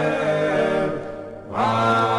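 Low voices chanting a Georgian Orthodox hymn in several parts on long, held notes. The chord fades briefly about a second in, then a new chord starts.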